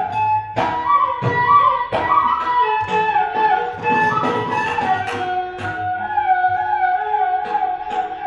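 Carnatic bamboo flute playing an ornamented melody in raga Anandabhairavi, sliding between notes. It climbs in the first two seconds and then settles on a long held lower note in the second half, over drum strokes about once a second.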